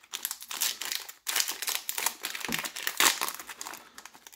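Foil wrapper of a Pokémon trading card booster pack crinkling as it is torn open by hand: an irregular run of crackles with several louder bursts.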